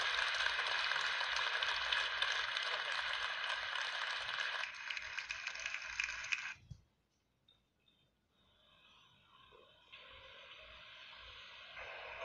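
Audience applauding, a dense steady clapping that eases a little partway through and cuts off abruptly about six and a half seconds in. After a moment of near silence, faint room noise fades in.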